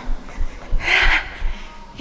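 A woman's strong, breathy exhale about a second in, winded from jumping exercise, over soft low thumps that die away shortly after.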